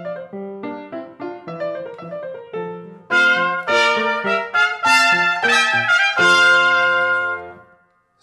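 Piano accompaniment plays short notes, then an E-flat trumpet comes in about three seconds in, louder, with a phrase of sustained notes. It ends on a long held note that fades out just before the end.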